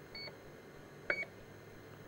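Electronic beeper of the airship's onboard emergency rapid deflation device giving two short high beeps about a second apart, a sign that the deflation system is working.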